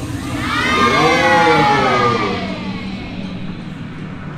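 Audience cheering in a rising-then-falling call that swells about a second in and fades, over quieter dance music.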